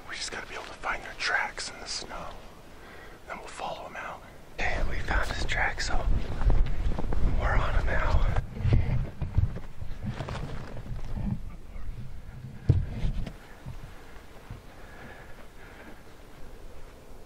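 A man whispering close to the microphone, with a low rumble of wind buffeting the microphone from about four and a half seconds in until about thirteen seconds in.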